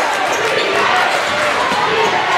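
Basketball being dribbled on a hardwood gym floor, a run of bounces over the steady chatter and shouting of a crowd in the stands.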